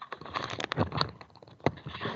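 A burst of irregular clicks and crackling, with one sharp click the loudest, about a second and a half in.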